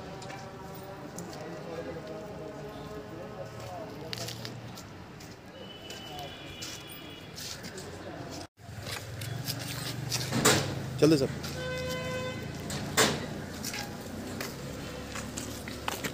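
Indistinct voices of people talking over street noise, with a short car horn toot about twelve seconds in and a few knocks.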